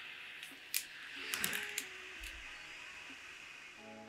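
A neck air conditioner being lifted off the neck: faint handling clicks and rustle over a light fan hiss, then near the end a steady electronic beep as its wearing detection switches the unit off.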